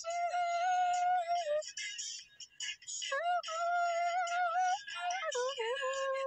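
A woman singing long, steady high notes, sliding up into each one, with a pause of about a second and a half between phrases. It is vocal warm-up singing played back from a phone voice recording.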